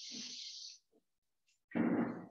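A person's breath close to the microphone, a high hiss lasting about a second, then near the end a short, louder throaty vocal sound such as a grunt or cough.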